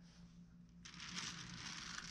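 Faint rustling of a hand moving at a clay sculpture, starting about a second in, over a low steady electrical hum.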